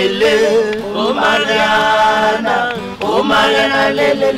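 A man's voice singing a chant-like song in drawn-out phrases, with one long held note in the middle.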